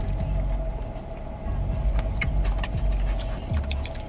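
Steady low hum of a car cabin, with a run of crisp rustles and clicks from about halfway through as a fast-food bag is handled.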